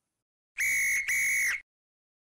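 A referee's whistle blown twice in quick succession: two steady, high, shrill blasts of about half a second each.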